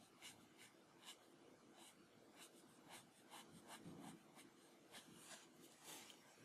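Faint, quick strokes of a Copic alcohol marker's nib brushing across paper, a few short scratches a second as colour is laid in.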